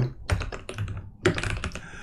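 Typing on a computer keyboard: a quick run of keystrokes entering a short title.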